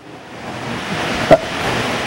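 A steady background hiss that grows louder through a pause in speech, with one small click a little past the middle.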